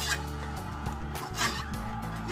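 Vertical slow juicer running, its motor humming low and steady, while its auger crushes pieces of fruit and vegetables. Two short, sharp squeaking crunches stand out, one right at the start and a louder one about a second and a half in.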